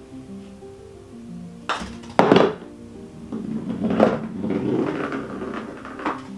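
Soft background music with plucked notes, over which a putter strikes a golf ball with a couple of sharp clicks about two seconds in. A rumbling roll follows for a couple of seconds as the ball runs along the putting mat and its plastic ball-return track.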